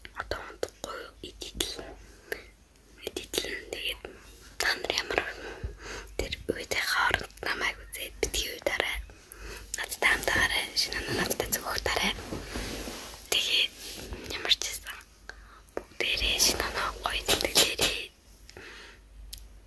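A girl whispering close to the microphone in short, breathy phrases.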